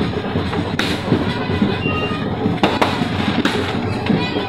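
Auto-rickshaw engine running and its body rattling in motion, heard from inside the open cabin, with a few sharp knocks.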